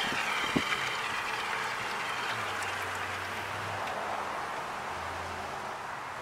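Steady hiss of motor oil and air being drawn up the suction tube into a homemade vacuum oil extraction chamber, running on residual vacuum with the pump off and slowly fading as the vacuum weakens.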